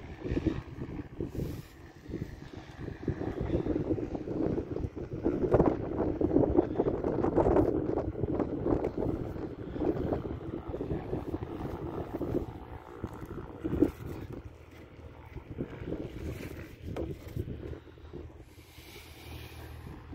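Wind buffeting the microphone, an irregular rumbling that builds to its loudest in the middle and eases off toward the end, with one short knock about two-thirds of the way through.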